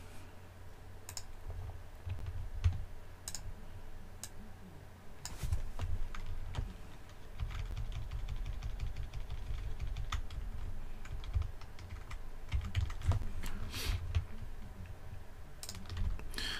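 Computer keyboard typing and scattered clicks, irregular and fairly quiet, over low dull bumps.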